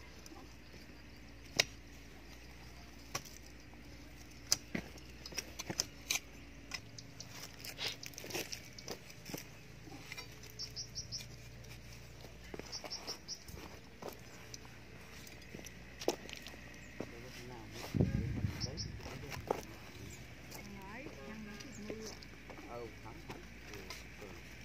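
Steel digging spade chopping into dry, stony soil: scattered sharp knocks and scrapes, with a heavier thud about 18 seconds in.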